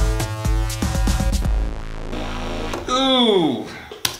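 Electronic beat playing back from the computer: drum-machine hits over sustained synth chords. The drums stop about a second and a half in while a chord holds on, and near the end a pitched sound slides steeply down.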